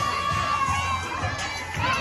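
Teenagers cheering and shouting with a long high whoop that slides down about a second in, and another starting near the end, over pop music playing for a dance routine.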